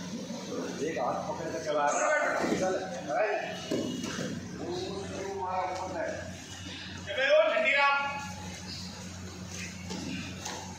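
Men's voices talking and calling out in a large echoing hall, with one loud call about seven seconds in, over a steady low hum.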